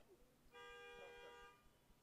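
A steady, buzzy pitched tone with many overtones, starting about half a second in and held for about a second before stopping, faint under low background voices.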